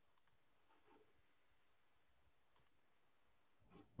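Near silence: faint room tone over a video call, with a few faint clicks, two quick pairs of them.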